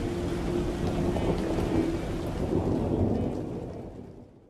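A dense low rumbling noise with a faint held tone in it, fading away over the last second.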